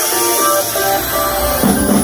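Live band music led by guitar, with sustained melodic notes over little bass. A deep low note and a heavier low end come in near the end.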